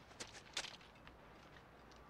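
Near-quiet outdoor ambience with a few faint, short clicks or scuffs in the first second, then only a low steady hiss.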